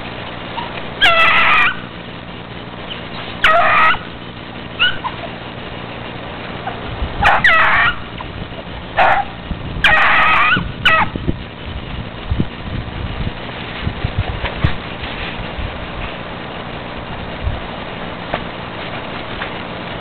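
Rabbit hound baying on a rabbit's track: a string of drawn-out bawls, about seven of them, in the first eleven seconds. After that there are only scattered low thumps.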